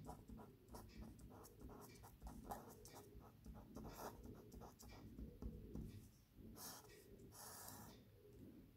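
Faint strokes of a felt-tip marker writing letters on paper, ending in two longer scratchy strokes as the heading is underlined.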